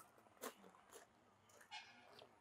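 Near silence, with a few faint, short sounds as hot tea is sipped from a small clay cup.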